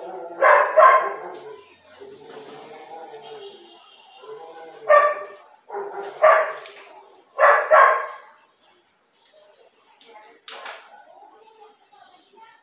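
A dog barking several times in short, loud bursts, mostly in quick pairs. A single sharp click comes near the end.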